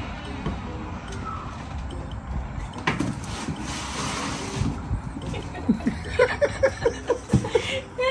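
Steady outdoor background noise with a rush of hiss around the middle, then a woman's short laughs and voice sounds in the last couple of seconds.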